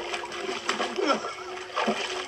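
Shallow water splashing as a limp wooden puppet is lifted out of it.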